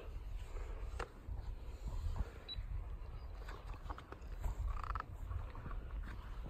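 Handling noise from a phone held against a dog's coat and collar: a low rumble with scattered small clicks and knocks.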